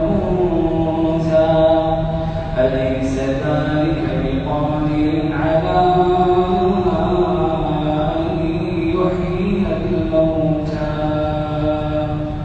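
A man reciting the Quran in the melodic, drawn-out style, holding long notes that rise and fall slowly in pitch.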